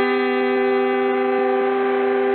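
A brass section holding one steady chord, the close of the song's brass intro, played back five semitones lower than the original.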